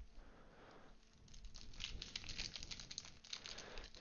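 Foil wrapper of a Prizm basketball trading card pack crinkling as it is handled and opened. Quiet at first, the crackle begins about a second in and grows louder.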